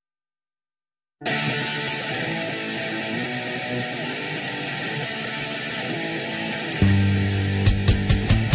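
Silence, then a punk rock song starts abruptly about a second in with a guitar playing alone; bass comes in near the end, followed by drums.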